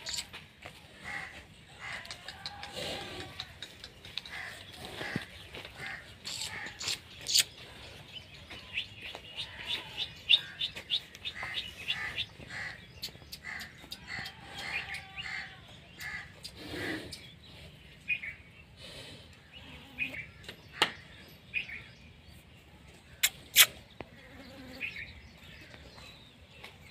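Small birds chirping and twittering on and off, quickening into a rapid run of chirps about a third of the way in. A few sharp clicks cut through, the loudest two close together near the end.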